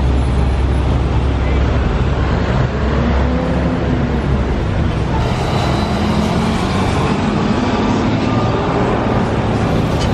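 City street traffic: a heavy diesel truck's engine runs low and loud as it passes in the first few seconds, over a steady wash of road traffic noise, with voices of passersby mixed in.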